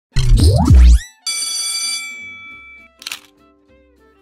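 Intro sound effects: a loud rising swoop lasting about a second, then a bright ringing chime that fades over the next second and a half, and a short noisy hit about three seconds in.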